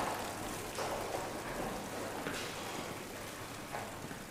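Steady hiss-like background noise of a large hallway, with a few soft footsteps on a hard floor about a second and a half apart.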